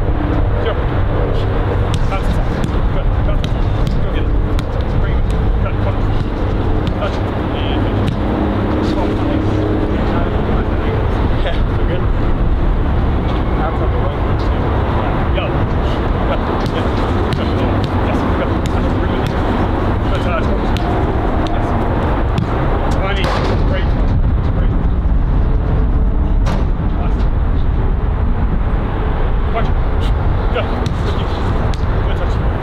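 Steady low rumble of wind on an outdoor microphone, with occasional sharp knocks of a football being kicked and faint distant calls from the players.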